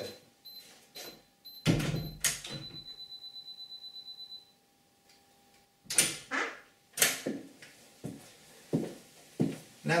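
Canon G12 self-timer beeping, quickening into rapid beeps about eight a second, then stopping about four and a half seconds in as the shutter fires. A door thuds shut early on. Near the end come the knocks of a door opening and footsteps on a wooden floor.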